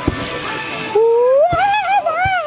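A long, loud vocal cry that rises in pitch about a second in, then is held with a wavering tone, over background music. A couple of sharp thumps, typical of bounces on the trampoline bed, fall at the start and partway through.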